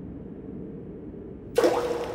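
Cartoon sound effect of a rock dropped into a deep chasm: a low, steady rushing noise while it falls, then a sudden loud clatter about one and a half seconds in as it hits the bottom.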